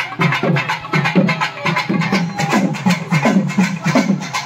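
Live festival drumming: a waist-slung double-headed drum beaten in a steady rhythm of about three strokes a second, each low stroke sliding down in pitch, with a bright clattering percussion over it.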